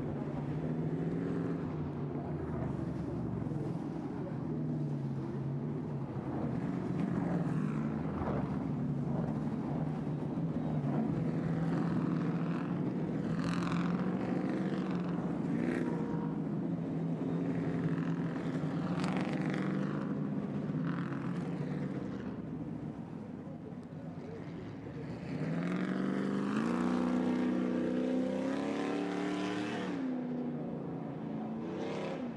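Several Stadium Super Trucks' V8 race engines running at speed, revving up and down as they shift and pass. The sound dips briefly, then a strong rising rev follows near the end.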